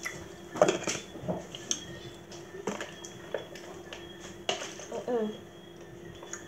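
Scattered light clinks and knocks of a drinking glass and spoon, with brief voices about half a second in and again near the end, over a faint steady hum.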